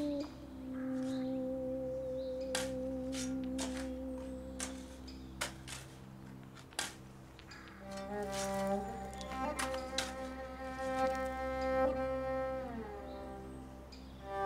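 Slow bowed-string background music: long held low notes with a slow vibrato, with more string voices joining from about eight seconds in and holding a fuller chord. A few soft clicks sound under it.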